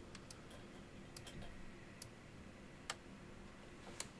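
Faint, sharp clicks of a CB radio's rotary selector switch being stepped through its positions, about one a second, over a low steady hum.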